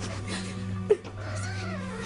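A young woman crying, with a sharp sob about halfway through and a wavering, wailing cry after it, over soft sustained background music.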